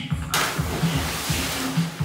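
A person splashing feet-first into a swimming pool: a sudden loud rush of water about a third of a second in that washes on for over a second. Music with a steady beat plays throughout.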